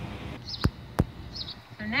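House sparrows chirping, a short chirp about half a second in and another near the end, with two sharp knocks between them about a third of a second apart. A soft wash of outdoor noise fills the first moment.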